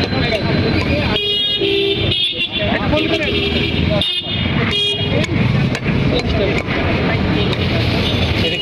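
Busy outdoor market din: people talking and vehicle horns tooting a couple of times.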